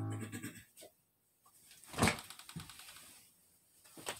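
A held chord on an electronic keyboard dying away in the first half second, followed by small clicks and knocks of movement and one short, loud rustling burst about two seconds in.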